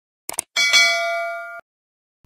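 A quick pair of mouse-click sound effects, then a notification bell ding that rings for about a second and cuts off suddenly.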